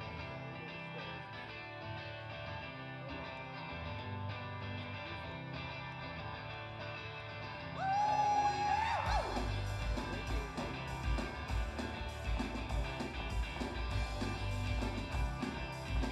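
Live rock song from electric guitar and bass guitar, starting with a steady instrumental intro. About eight seconds in, a lead line slides in, drums join with a steady beat, and the music gets louder.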